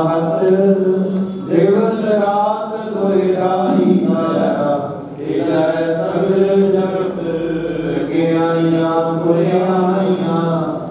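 Sikh hymn (Gurbani) sung in a slow, drawn-out chant over a steady low drone, with a brief break about five seconds in.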